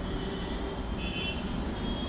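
Steady background noise with a low rumble, with a faint high tone that rises briefly about a second in.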